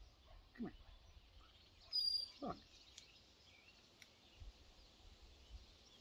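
Faint birdsong and a few short calls. The loudest is a brief high chirp about two seconds in.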